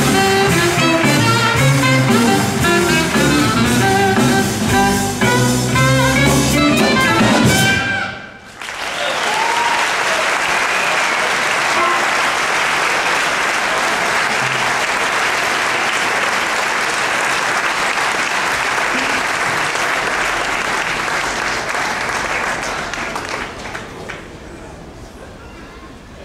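Jazz quartet of saxophone, guitar, double bass and drum kit playing the last bars of a tune, stopping together about eight seconds in. The audience then applauds steadily for about fifteen seconds, and the applause dies away near the end.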